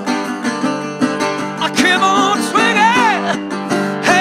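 Slide guitar played on a metal-bodied resonator guitar with a brass slide, notes gliding up and down in arcs over steady sustained chords.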